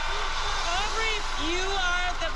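Studio audience applauding and cheering: a dense, steady clapping with many voices calling out over it.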